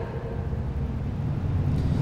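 Steady low rumble and hum of background noise, with no distinct events.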